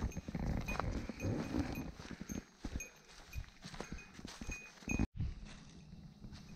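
Footsteps crunching and crackling through dry leaf litter and twigs, an irregular run of crackles and thuds, with a faint high ringing recurring every so often. About five seconds in the sound cuts out for a moment, and a quieter, steady rustle follows.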